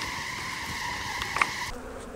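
Honey bees buzzing around an open hive, agitated: a steady hum that cuts off sharply near the end, with a faint tick about one and a half seconds in.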